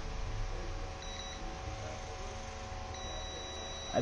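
Digital multimeter's continuity buzzer beeping as its probes touch the ECM's pins and circuit-board traces: a short beep about a second in, then a steady beep from about three seconds in, which signals an electrical connection between the two probed points.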